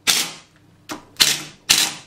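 Impact wrench on a bolt of a Land Rover Series One steering box, hammering in three short bursts, each starting sharply and fading over about half a second, with a smaller burst just before the second.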